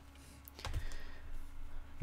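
Plastic Blu-ray cases being handled: a few sharp clicks and a soft rustle as cases are put down and picked up, starting about half a second in.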